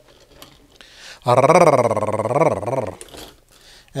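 A drawn-out growl with a wavering pitch, starting about a second in and lasting about a second and a half.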